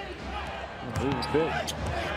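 Basketball dribbled on a hardwood court: a series of sharp bounces over a steady low background of arena noise.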